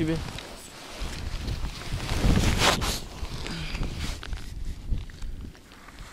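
Rustling and handling noise as a fishing landing net with a bream in it is pulled in and handled, over a low rumble of wind on the microphone. A louder, rougher rustle comes about two and a half seconds in.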